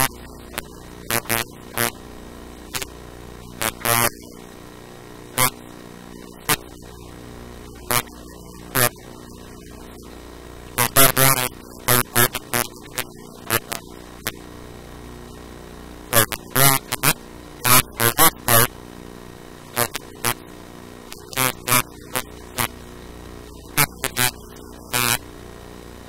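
Speech in short, harsh-sounding bursts that are hard to make out, over a steady electrical hum.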